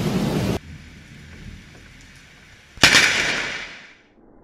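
Steady hiss of heavy rain that cuts off about half a second in, then after a quiet stretch a sudden close thunderclap: one sharp crack from a nearby lightning strike, about three seconds in, dying away over about a second.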